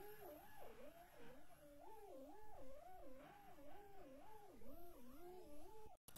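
A faint, electronically processed pitched tone with heavy vibrato, its pitch wobbling up and down about twice a second. It cuts off at the end.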